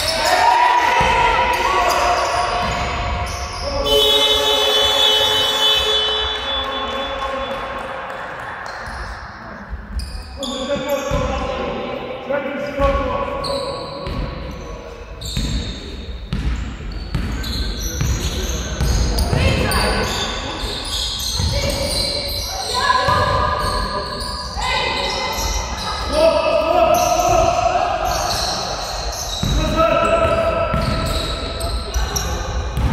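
Basketball game play in a large gym hall: a basketball bouncing on the wooden court as players dribble, with quick footsteps and players and coaches shouting, all echoing in the hall.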